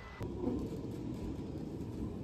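A tram car rumbling along its street rails, a steady low rumble that starts abruptly about a quarter second in.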